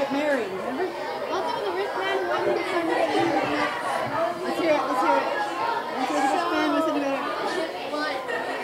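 Many students' voices overlapping in a large room, each telling a story aloud at the same time, making a continuous babble of chatter.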